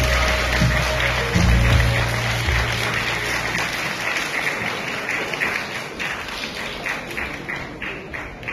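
Audience applauding in a large hall at the end of a performance, the clapping slowly dying away. Low backing-music notes sound under it and stop about halfway through.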